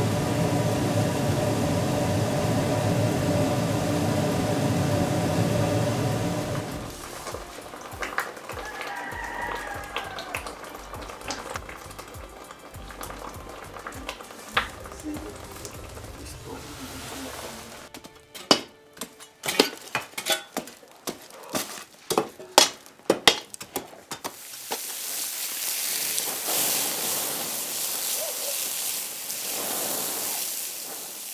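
A gas-fired bronze-melting pit furnace runs steadily on its air blower for the first several seconds, then cuts off. A quieter stretch with scattered clicks follows, then a run of sharp cracks and clicks. From about 24 s on there is a steady hiss, like water sizzling into steam on hot, burnt-out casting molds.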